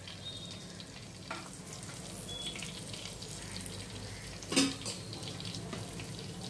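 Oil sizzling in a clay pot as garlic cloves and a green chilli fry, stirred with a steel spoon. There is one sharp knock about four and a half seconds in.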